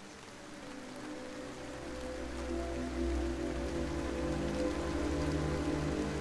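Steady rain falling, with background music of long held notes and a deep bass fading in from about a second and a half in and growing louder.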